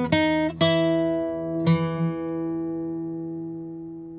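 Background music on plucked guitar: a few single notes, then a chord left ringing and slowly fading away.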